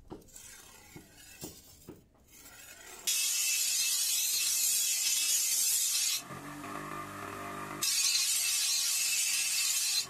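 A few faint knocks, then, about three seconds in, a bench grinder's abrasive wheel starts grinding a steel sword blade with a loud, steady hiss. It eases off to a lower steady hum for a second or two, then grinds loudly again near the end.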